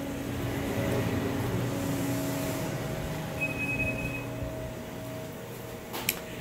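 Steady machine hum with a faint, brief high tone in the middle.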